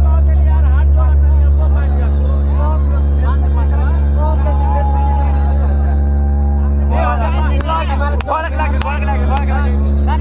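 A loud, steady low drone, engine-like, with indistinct voices talking over it; the voices grow louder and busier near the end.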